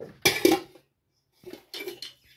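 Metal dishes and utensils clattering: two short bunches of clinks and knocks, the first just after the start and the second about a second and a half in.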